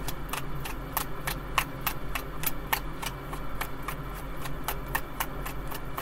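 A tarot deck being shuffled by hand: a steady run of light, sharp card clicks, several a second.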